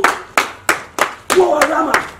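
Steady rhythmic hand clapping, about three claps a second, with a voice calling out over the clapping in the second half.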